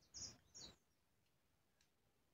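Near silence, with two faint, short, high ticks in the first second: the small metal chain and pendant of a necklace clinking as it is handled.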